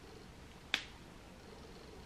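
A single short, sharp click about three-quarters of a second in, over quiet room tone.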